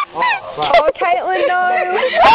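A person's voice calling out in quick rising and falling pitches, ending in one long held note.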